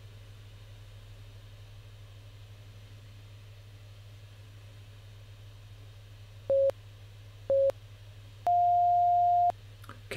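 Workout interval timer countdown beeps: two short beeps a second apart, then one longer, higher beep marking the end of the interval. A faint steady low hum lies underneath.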